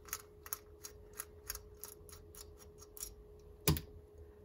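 Small sharp clicks at about three a second as a flathead screwdriver turns a needle screw out of a motorcycle carburetor, over a faint steady hum.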